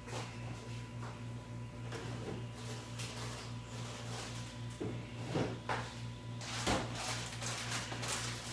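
Kitchen drawers or cupboards being opened and shut out of sight, a few short knocks and clunks in the second half, over a steady low hum.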